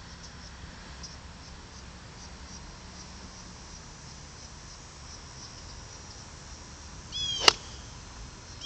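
A golf iron strikes the ball once near the end, a single sharp click. It comes just after a short descending bird call, over a quiet outdoor background with faint bird chirps.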